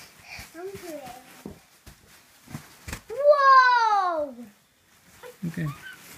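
A young child's voice: a few short vocal sounds, then a loud, long cry that falls steadily in pitch, with a couple of soft thumps just before it.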